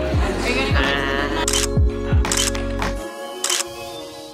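Background music with a beat and deep falling bass hits, overlaid in the second half by a few sharp camera shutter clicks as a group photo is taken.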